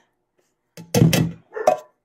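A metal can of crushed pineapple knocked hard against the rim of a mixing bowl to shake out the last of the fruit: a quick run of loud knocks about a second in and one more shortly after, loud enough to pass for a knock at the door.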